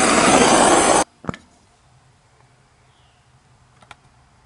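Handheld blowtorch flame hissing loudly, cutting off abruptly about a second in. A couple of faint clicks follow.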